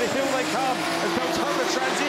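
Two drift cars' engines at high revs, the pitch rising and falling as the drivers work the throttle while sliding in tandem; the lead car is a diesel Mercedes wagon.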